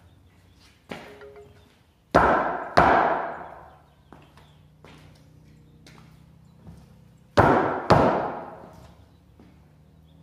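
Two pairs of heavy wooden thuds: the 4x4 crossbar being knocked down into the notch cut in the upright. The first pair comes about two seconds in and the second about seven seconds in, with the strikes in each pair about half a second apart. Each thud rings on briefly and echoes in the garage.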